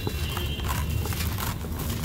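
Dry sand-cement lumps crushed by hand, crunching and crumbling in a run of irregular gritty crackles as the powder pours down into a plastic bucket.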